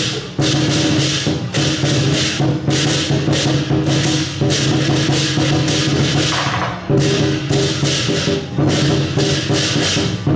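Lion-dance percussion band playing: a drum with clashing cymbals and a gong in a steady fast beat, with brief breaks just after the start and about seven seconds in.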